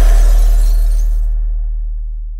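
The song's closing hit: a deep bass boom that rings on and slowly fades, over a bright crashing noise that dies away within about a second and a half.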